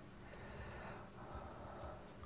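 Faint handling sounds of a thin metal spudger prising the metal base cap off a small glass-jar night light, with one light click near the end.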